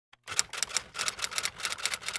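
Typewriter sound effect: a quick run of keystroke clicks, about six a second, starting about a quarter second in, as on-screen text is typed out.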